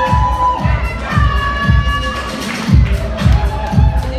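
Music with a steady kick-drum beat, about two beats a second, under held melody notes; the beat drops out briefly about halfway through.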